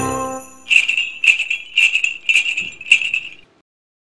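The last notes of a soft music piece fade out, then jingle bells are shaken in about five short shakes roughly half a second apart, ending abruptly shortly before the end.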